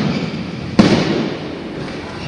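Jumping stilts landing on a gym floor: a loud thud about a second in, echoing in the hall, one of a run of bounces about a second apart.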